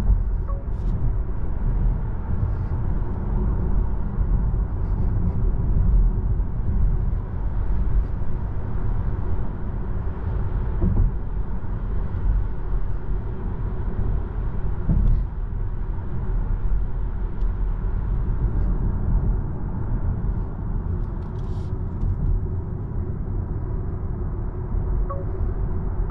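Steady low road and tyre rumble inside the cabin of a Volvo EX30 electric car cruising at about 65 km/h. There is no engine note.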